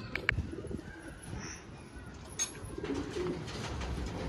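Domestic pigeons cooing in a loft, with a couple of sharp knocks near the start and about halfway.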